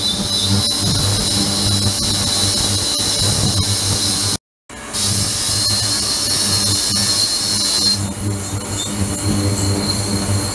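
Ultrasonic cleaning tank running: a steady hum under a thin high-pitched whine and a dense hiss from the agitated water. The sound cuts out for a moment about halfway through, and the high hiss thins about eight seconds in.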